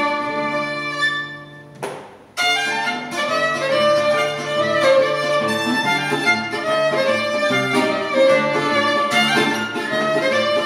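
Violin and nylon-string Spanish guitar duo playing live. The violin holds a long note that fades, there is a brief pause about two seconds in, and then both instruments come back in with busier, quicker playing.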